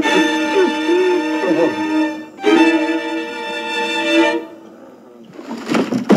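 Dramatic bowed-string score with violins playing held, wavering notes in two phrases. It drops away about four seconds in.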